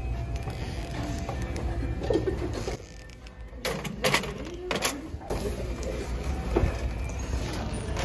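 Music playing over a low steady hum. A few sharp knocks and clatters come about midway, as plastic card shufflers are set down in a shopping cart.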